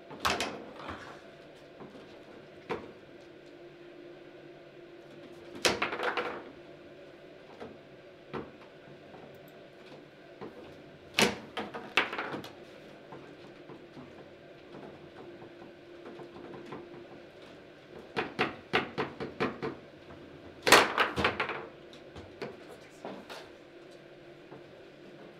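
Table football play: sharp knocks of the hard ball striking the plastic players and the table, with clacks of the rods. The knocks come in short clusters a few seconds apart, with a quick run of light taps near the end and then the loudest flurry of hits.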